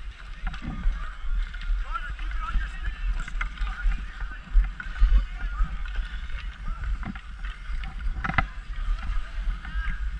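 Ice skates scraping and gliding on an outdoor rink, heard from a camera carried by a skater, over a steady low rumble. Distant children's voices call out. A single sharp knock comes about eight seconds in.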